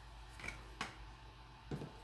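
A few faint, brief clicks and taps of small things being handled, over quiet room tone.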